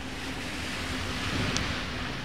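Steady hiss of traffic on a rain-soaked road, swelling a little about halfway through as a vehicle's tyres pass on the wet surface, with a faint low engine hum underneath.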